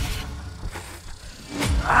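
A man groaning in pain from a fresh tarantula hawk sting, over a low rumble, breaking into a loud, strained cry of "ah" near the end.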